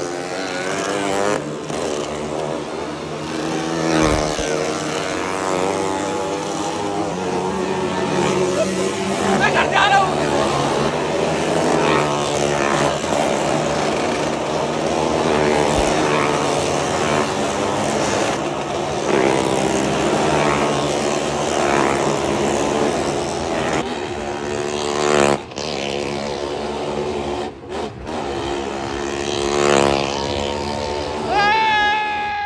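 Motorcycle engines revving as stunt riders circle the wooden wall of a Well of Death pit, the pitch rising and falling as they go round.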